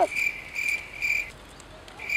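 An insect chirping outdoors in a steady, high-pitched pulsing call that breaks off past the middle and starts again near the end.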